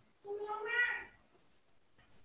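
A single animal call about a second long, rising slightly in pitch and then fading.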